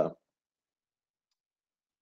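Near silence: a man's word trails off just after the start, then the audio drops to dead silence.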